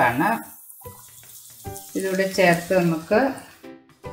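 Background music with a singing voice. About half a second in, under it, a faint sizzle as chopped mushrooms slide into hot oil with fried shallots in a nonstick pan.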